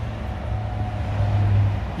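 Low, steady drone of a motor vehicle running, swelling a little louder near the end.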